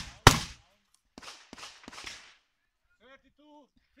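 A loud gunshot about a third of a second in, close on the heels of another shot just before, on a cowboy action shooting stage that ends fifteen rounds clean. A few much quieter short cracks follow over the next second, then faint voices near the end.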